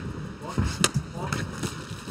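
Sharp smack of a Muay Thai strike landing, a kick or punch on the body or gloves, about a second in, with a fainter impact just before. Faint voices underneath.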